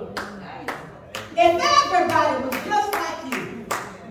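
Hand clapping in a steady rhythm, about two claps a second, with a loud voice over it from about a second and a half in to about three seconds.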